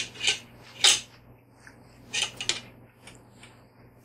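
Metal fork scraping against a paper plate while picking up a piece of sardine: a few short scrapes, the loudest about a second in.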